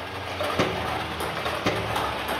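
Joola TT Buddy table tennis robot running, its motor making a steady whirring noise, with two sharp knocks about a second apart.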